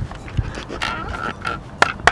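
Rustling and knocking as a hockey helmet with a cage is pulled on and adjusted, with a sharp click near the end.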